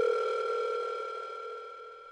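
Steady telephone tone made of two held pitches, fading out evenly.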